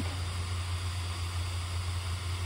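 Steady low hum and airy rush of an inflatable lawn decoration's built-in electric blower fan, running continuously to keep the figure inflated.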